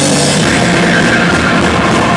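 A rock band playing live and loud: electric guitar and bass guitar over a drum kit.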